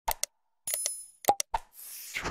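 Animated subscribe-button sound effects: two quick clicks, a short ringing bell chime, another pop and click, then a whoosh near the end.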